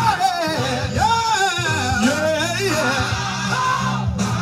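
Live gospel music played over a PA: a singer's voice sliding through bending, ornamented runs over a band with a steady bass line.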